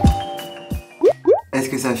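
Background music ends with a quick downward sweep, its last notes fading out. About a second in come two quick rising bloop sound effects, one after the other, just before a man starts talking.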